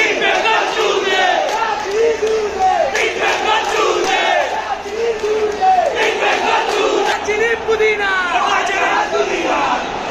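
Football stadium crowd chanting: many voices repeating the same rising-and-falling call about once a second. A few higher rising shouts rise over the chant near the end.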